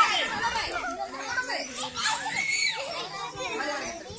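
A group of children talking and shouting over one another, many high voices at once.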